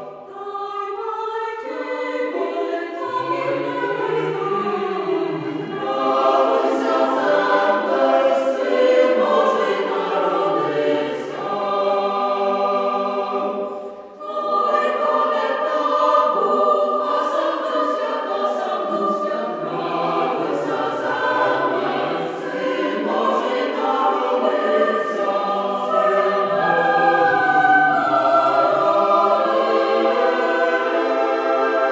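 Choir singing a Ukrainian Christmas carol in parts, with a short break between phrases about fourteen seconds in.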